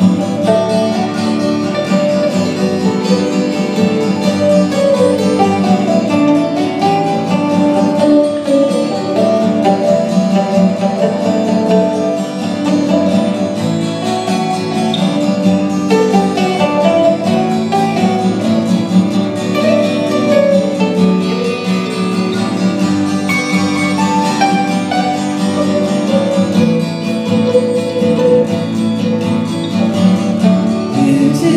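Instrumental break of an acoustic band with no singing: a mandolin plays the lead over strummed acoustic guitar.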